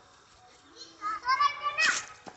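Children's voices calling out from about a second in: high-pitched, with rising and falling pitch.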